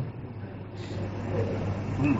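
A pause between spoken phrases, holding only a steady low hum and faint background noise.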